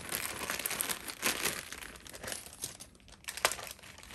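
Thin plastic zip-lock baggie crinkling as it is pulled open and handled, with a few sharper clicks near the end.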